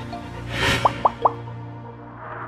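Electronic logo sting: a held low tone with a short whoosh, then three quick rising plops in a row.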